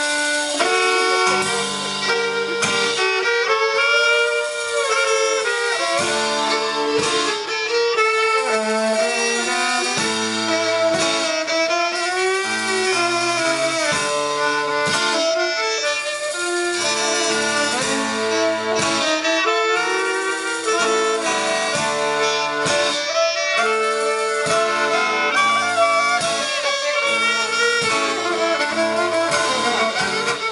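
Live Celtic folk-rock band playing an instrumental passage with no singing: a fiddle carries the melody alongside a clarinet, over strummed acoustic guitar, electric bass and a drum kit keeping a steady beat.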